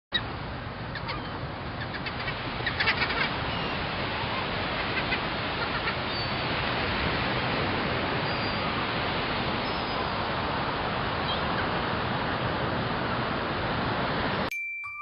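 A steady rushing noise with a few faint, short, high bird-like chirps over it, and a cluster of clicks about two to three seconds in.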